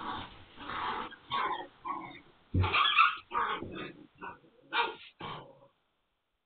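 Magyar Vizsla puppies growling and yipping in play, a string of short irregular bursts, loudest about two and a half seconds in, stopping shortly before the end. The sound is thin and cut off at the top, as through a security camera's microphone.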